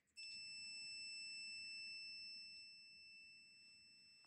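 Electronic alert tone from a ghost-hunting sensor device that has been triggered: one steady, high-pitched tone that starts abruptly and fades somewhat in the second half.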